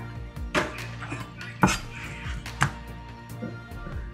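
Three light knocks about a second apart on a wooden cutting board as blocks of fried tofu are handled beside a cleaver, over background music.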